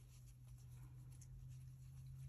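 Near silence: a faint scratchy rustle of a crochet hook working yarn stitch by stitch, over a steady low hum.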